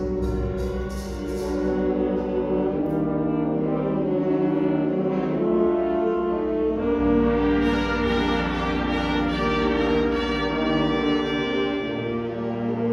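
Concert wind band playing sustained chords, with brass prominent. The sound grows fuller and brighter about two-thirds of the way through.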